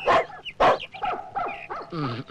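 German Shepherd dog barking: two loud barks about half a second apart, then quieter, shorter barking sounds.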